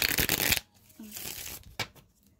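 Tarot cards being shuffled: a loud, rapid riffle of card edges over about the first half second, then a softer stretch of cards sliding and a single sharp snap near the end.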